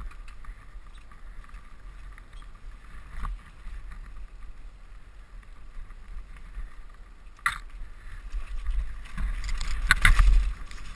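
Mountain bike descending a dirt trail fast: wind buffeting the camera microphone over the steady noise of tyres and the rattling bike. Sharp clatters over bumps about three seconds in, again at seven and a half seconds, and loudest near the end.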